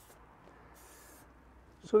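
A short hiss from an aerosol can of lanolin rust-proofing oil, one burst of about half a second near the middle, sprayed onto a motorhome's underbody frame. Otherwise faint background.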